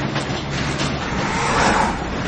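Vehicle noise: a steady low engine rumble under a loud broad rush, swelling slightly near the end.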